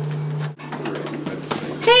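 A steady low hum on the soundtrack, broken by an abrupt cut about half a second in. After the cut there is room noise with faint, indistinct voices, and a woman says "Hey" near the end.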